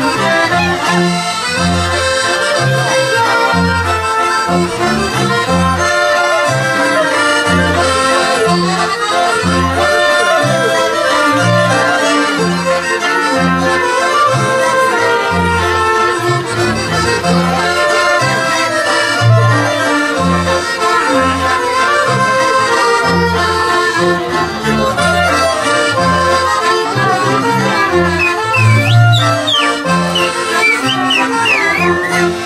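Traditional Polish folk band (kapela) playing an instrumental dance tune on accordion, fiddles, clarinet and double bass, with the bass marking a steady beat.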